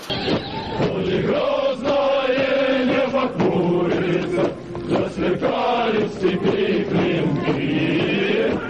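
A group of men singing a Russian military marching drill song in unison, with long held notes. The sound is dull and lacks highs, like an old recording.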